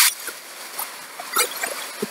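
Tissue-paper sewing pattern pieces rustling as they are gathered up and moved, loudest at the start and then trailing off into a few soft crackles.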